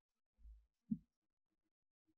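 Near silence broken by faint handling bumps as the side-by-side hammer shotgun is mounted: a soft low thud about half a second in, then a short knock just before one second.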